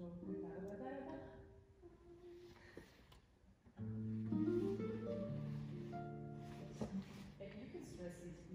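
Classical guitars playing: a few quieter plucked notes, then a loud chord about four seconds in that rings on under more notes.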